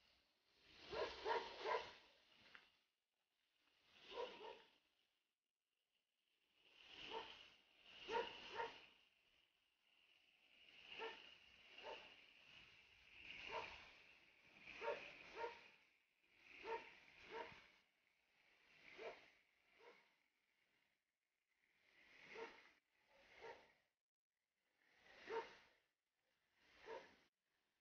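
A dog barking over and over, in bursts of one to three barks every second or two. Under the barking is a faint, steady high hiss from the burning red match flare.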